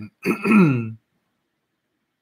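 A man clearing his throat once, a short voiced rasp that falls in pitch and lasts under a second.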